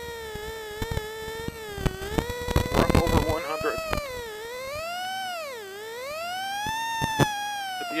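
Plymouth Neon rally car at speed on a rough snow stage: a high whine from the engine and drivetrain that rises and falls with the revs, dropping sharply about five and a half seconds in as the driver lifts and then climbing back. Short knocks and bangs from the rough surface come through in the first few seconds.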